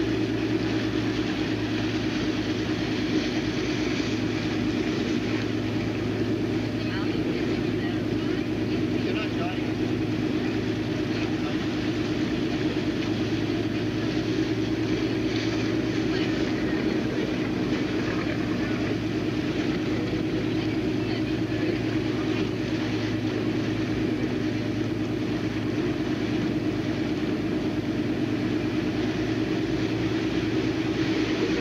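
Motorboat engine running steadily, a low even drone that does not change.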